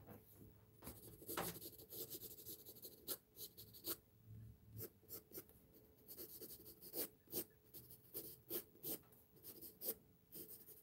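Graphite pencil scratching faintly on drawing paper in many quick, short, irregular strokes, laying in feathery hair texture.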